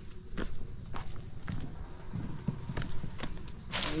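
Footsteps and scuffs on bare rock, with scattered short knocks, as someone walks across a rocky shore. A louder knock comes just before the end as he reaches the landing net lying on the rock.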